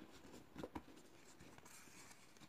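Faint handling of a flattened cardboard toilet-paper tube being folded and creased by hand on a tabletop: a couple of soft taps, then a light scratchy rustle of cardboard rubbing near the end.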